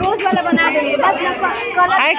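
Chatter of several girls' voices talking over one another.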